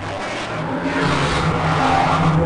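Harsh noise from the RTGS-X real-time granular synthesizer, its grains steered by webcam motion tracking of a hand-held object. It is a dense hiss and rumble over low drones that step in pitch, getting a little louder about a second in.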